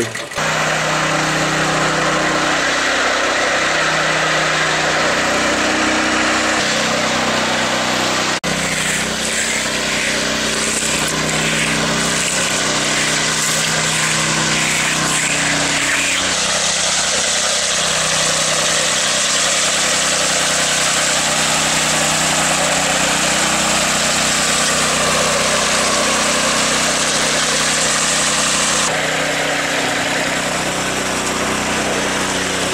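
Walk-behind power trowel's small gasoline engine running steadily as it finishes the concrete slab, its pitch wandering slightly, with a sudden change in tone about eight seconds in.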